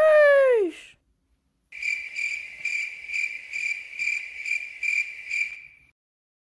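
A man's voice trails off in a falling "shoo" in the first second. After a moment of dead silence, a crickets sound effect plays: a steady high chirping trill pulsing about two and a half times a second, stopping just before the end. It is the stock "crickets" gag for an awkward silence.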